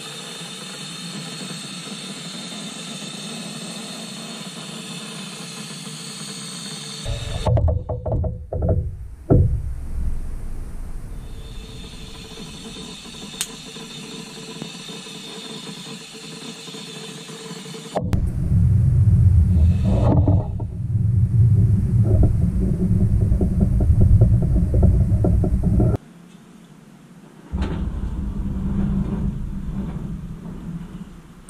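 Paint sprayer running: a steady hiss with a thin whine, broken by abrupt changes into heavy low rumbling about a third of the way in and again in the second half.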